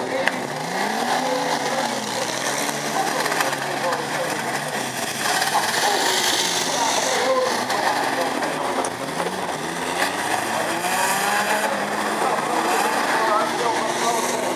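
Several banger race cars' engines revving up and down as they race round a dirt oval, the pitch rising and falling from car to car, with a louder burst of noise about five to seven seconds in.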